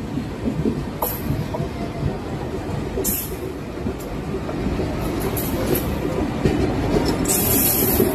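Train running on rails with a steady rumble and scattered sharp wheel clicks, growing louder as an Indian Railways WAP-4 electric locomotive closes in on the adjacent track. A loud rushing hiss sets in near the end as the locomotive comes alongside.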